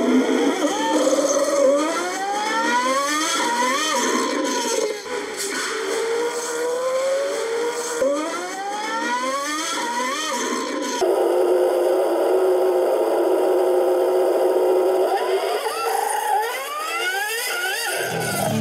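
A motor revving up in repeated rising sweeps, its pitch climbing for two or three seconds, dropping and climbing again. From about eleven seconds in it turns into a steadier drone, then rises again near the end.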